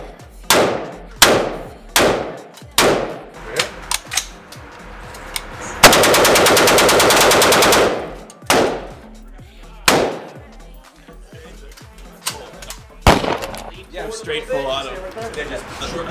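Rifle shots on an indoor range. About five single shots come roughly a second apart, then a full-automatic burst of about two seconds, then three more single shots spaced out.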